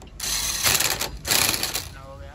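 Impact wrench hammering in two bursts, one of about a second and then a shorter one, as it tightens the bolt at the bottom of a scooter's front fork after the front wheel is refitted.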